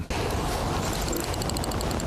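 Rapid, even, high-pitched ticking from the fishing tackle while the hooked burbot is played, starting about a second in over a steady rushing noise.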